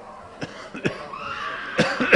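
Several people in a congregation coughing, a few separate coughs over two seconds, with a high held tone coming in about a second in. In this deliverance ministry, coughing is taken as unclean spirits leaving the person.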